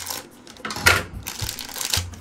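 Thin plastic bag crinkling as it is cut open with scissors, with a sharp crunching rustle about a second in.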